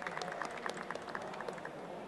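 Light, scattered audience applause: many irregular hand claps.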